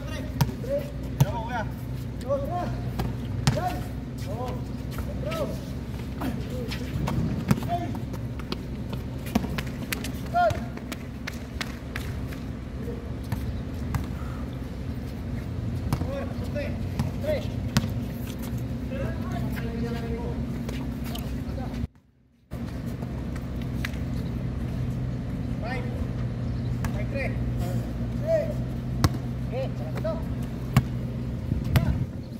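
A basketball bouncing now and then on a hard outdoor court, with players' voices calling out across the court over a steady low hum. The sound cuts out briefly about three-quarters of the way through.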